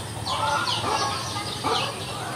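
Birds calling: a quick run of short, high, falling chirps, about four a second, with lower clucking calls among them.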